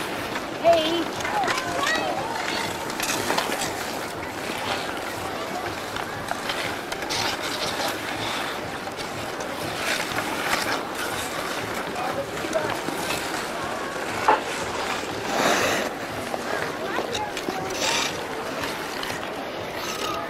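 Hockey sticks and ice skates on an outdoor rink: a steady scraping hiss of blades on ice under faint background voices, with two sharp stick-on-puck clacks, one about a second in and one near fourteen seconds, and a longer skate scrape just after the second.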